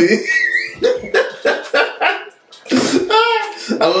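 People's voices making non-word vocal sounds, with a high wavering squeal near the start and a pitched, rising-and-falling sound about three seconds in.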